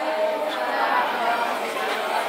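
Indistinct chatter of many people talking at once in a large hall, with no single clear voice.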